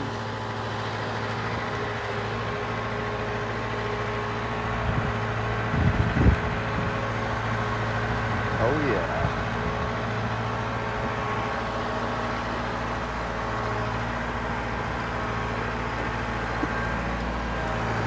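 Truck engine running steadily as it tows a trailer loaded with cut Christmas trees, heard from on top of the load, with a short louder spell about six seconds in.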